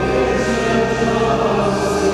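Liturgical chant sung by voices in the church, on long held notes. It comes after the first reading at Mass, where the responsorial psalm is sung.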